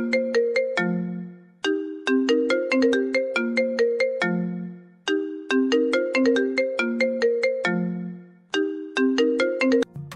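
Mobile phone ringtone: a short tune of quick notes that repeats about every three and a half seconds. It stops at the end as the call is answered.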